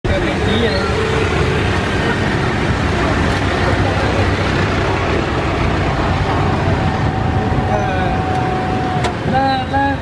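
Steady, loud city street traffic of cars and motorbikes heard from an open electric tourist cart as it rolls along, with voices talking. A long steady tone sounds for about two seconds in the second half.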